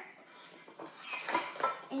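A spoon clinking and scraping in a ceramic dish as whipped topping mixed with crushed Oreos is stirred, with a few light knocks in the second half.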